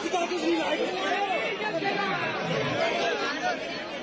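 Many men's voices talking over one another in a jostling crowd, a continuous babble with no single voice standing out.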